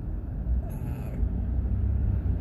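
Low, steady engine and road rumble inside a moving car's cabin, with a brief hiss a little under a second in.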